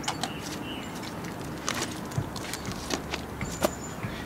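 Scattered scuffs and short knocks of a child climbing down out of a tree onto grass, over a steady outdoor background hiss.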